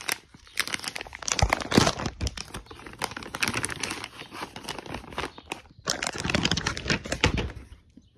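Plastic packaging around microfiber detailing towels crinkling and rustling as it is handled and torn open, a dense run of crackles with a short pause a little before six seconds in.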